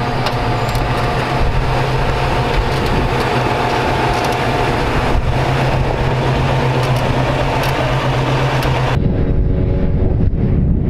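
Willys wagon's engine running steadily at low revs as it crawls over rock, with a few sharp clicks. Near the end the sound cuts to low wind rumble on the microphone.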